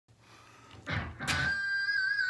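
Seven-string electric guitar: a brief noise on the strings about a second in, then a single high note picked and held steady.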